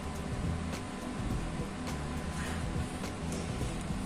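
Quiet background music with a low, steady bed of tones, and faint strokes of a felt-tip marker writing on paper.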